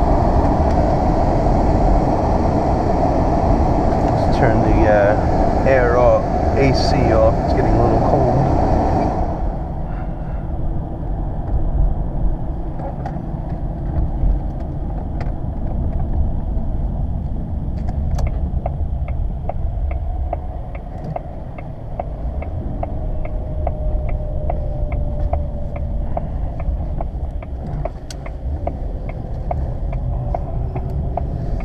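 Road and running noise inside the cabin of a 2000 Jaguar XJ8 on the move, louder for the first nine seconds or so and then lower as the car eases off. From about thirteen seconds in, the turn-signal indicator ticks steadily about twice a second.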